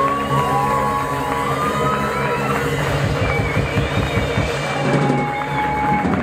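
Live rock band's electric guitars ringing out with long held notes that bend in pitch, over a noisy wash of amplified sound and crowd noise, as the drums stop at the close of a song.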